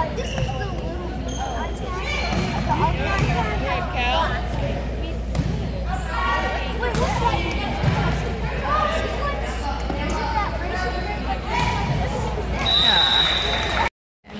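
Volleyball being hit and bouncing on a gym floor during a rally, with players' and spectators' voices throughout. Near the end a high steady tone sounds for under a second, a referee's whistle ending the rally.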